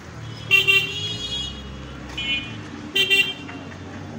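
A vehicle horn sounds three short honks over the steady low hum of street traffic; the first and last honks are the loudest.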